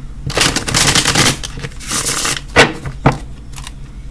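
A deck of tarot cards being shuffled by hand, the cards rustling against each other in two long stretches, then two sharp clicks about two and a half and three seconds in.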